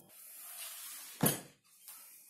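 Rustling handling noise, then one sharp knock a little past a second in, with a faint click near the end: things being moved and set down on the wooden board and table.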